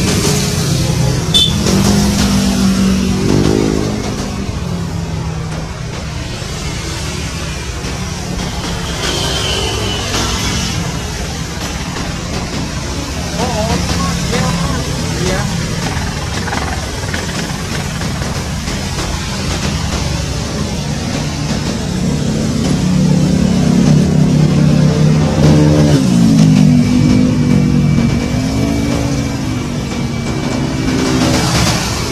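Military utility helicopter hovering low, its rotor and turbine running steadily. A voice is heard over it at times, near the start and again near the end.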